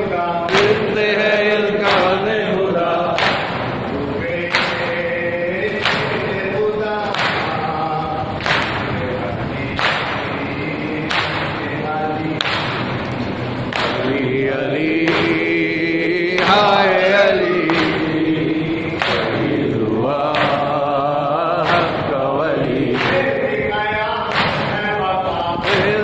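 A crowd of men chanting a mourning lament in unison, with a collective chest-beating slap (matam) landing on a steady beat about every second and a half.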